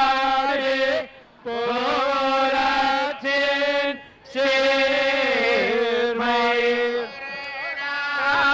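Devotional chanting: a voice holding long, ornamented melodic notes, breaking off briefly about a second in and again around four seconds in.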